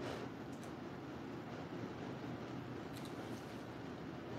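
A few faint snips of scissors cutting into a paper twenty-dollar bill, near the start, about half a second in and around three seconds in, over a steady low room hum.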